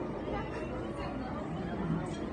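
Indistinct talking and chatter of voices, steady throughout, with no single clear event standing out.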